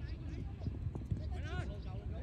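Indistinct voices calling out over a steady low rumble.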